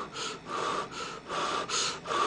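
A person blowing on a piece of hot steak to cool it: about five short breathy puffs in quick succession.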